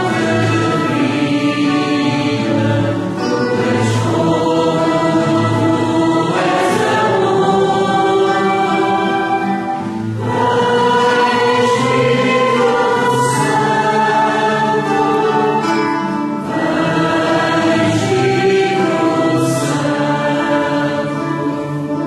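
A choir singing a hymn in sustained, several-voiced phrases, with brief breaths between phrases.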